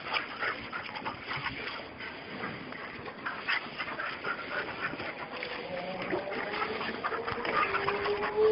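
A group of puppies play-fighting, with scuffling and scrabbling on dirt and short whimpers; a longer held whine comes near the end.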